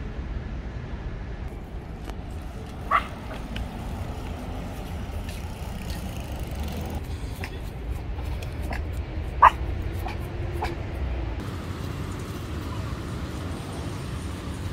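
A small dog yipping twice, two short high barks about six seconds apart, over a steady low background rumble.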